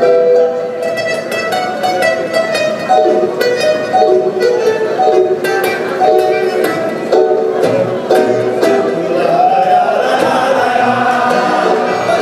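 Live acoustic music: an accordion playing held chords and melody over plucked and strummed acoustic guitars.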